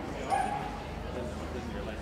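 Dogs barking in short, separate calls over the steady background chatter of a crowd, with one bark about a third of a second in standing out as the loudest sound.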